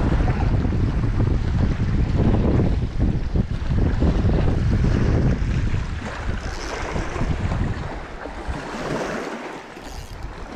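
Wind buffeting the microphone as a loud, gusty low rumble that eases off in the last few seconds.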